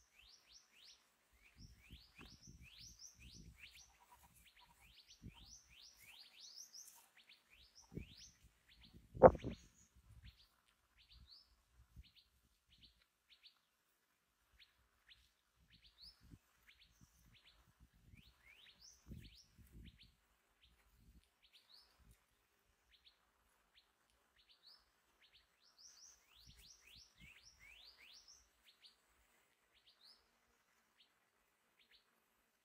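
A flock of minivets calling with rapid, thin, rising chirps that come several a second. A few low knocks break in, and the loudest is a single sharp thump about nine seconds in.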